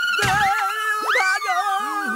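Cartoon background music with gliding, sliding notes and a springy boing effect as the animated dustbin hops. About a second in, a pitch sweeps up and then falls back.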